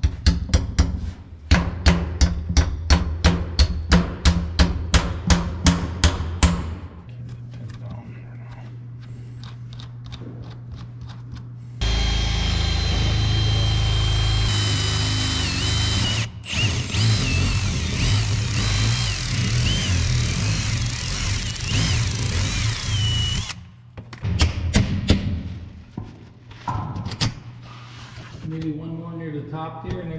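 Red cordless drill boring holes through the thick rubber bead of a tractor tire and a plastic backboard. For about eleven seconds in the middle its motor whines loudly, the pitch wavering as the bit bites, with a brief break partway. Earlier comes a run of evenly spaced sharp knocks, about three a second, for some six seconds.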